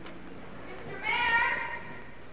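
A single high-pitched, drawn-out call about a second in, lasting under a second and rising slightly before falling away, over a low steady hum.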